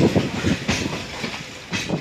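Train wheels running over rail joints and points, an irregular clatter of knocks over a low rumble, heard from aboard the moving train. It fades through the second half.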